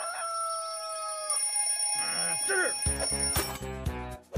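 Over cartoon background music, a held tone and a brief pitched call come first. About three seconds in, a cartoon alarm clock starts ringing, a loud rapid bell rattle that cuts off just after the end.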